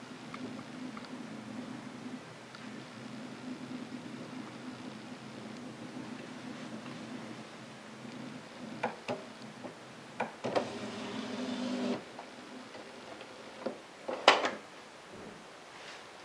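Epson Stylus S22 inkjet printer running its power-on initialisation: a steady low motor hum, a few clicks, a short whir as the print-head carriage moves, and a sharp clack of the mechanism about two seconds before the end.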